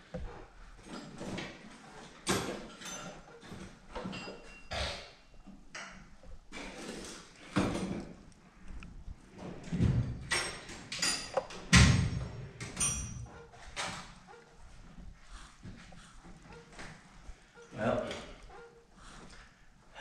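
Irregular knocks, clunks and clatter of tools and parts being handled while a vehicle's hoses are checked, with a brief ringing ping a few seconds in. The loudest knocks come around the middle, about ten and twelve seconds in.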